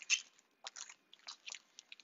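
Soft, scattered crinkles and clicks of plastic product packaging being handled while rummaging for items.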